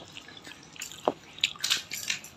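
Soft clicks and crackles of hands handling crisp fried gupchup puris on a steel plate, with a single drip-like plink about a second in.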